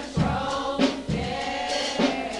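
Youth choir singing a gospel song together, with low beats thumping underneath.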